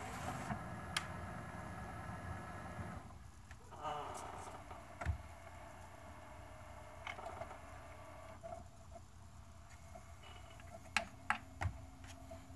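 Sony DVP-CX985V 400-disc changer's motorized front door sliding shut, then its carousel and disc-loading mechanism whirring, with sharp mechanical clicks scattered through and two near the end.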